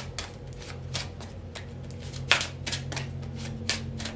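A deck of tarot cards being shuffled by hand: a quick, irregular run of card snaps and flicks, the loudest a little past halfway. A steady low hum runs underneath.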